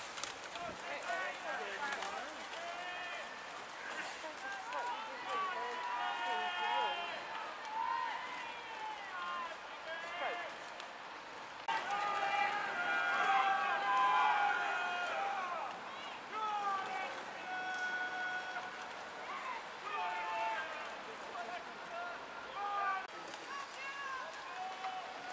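Indistinct voices of spectators talking and calling out, with no clear words. The voices get louder after a sudden step in level about twelve seconds in.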